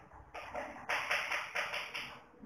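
Chalk writing on a blackboard: a run of about five short scratching strokes as a word is written out.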